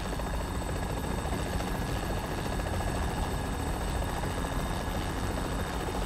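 Steady drone of a helicopter's engine and rotor heard from inside the cabin.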